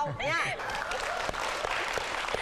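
Studio audience applauding, many hands clapping, with a laugh at the start.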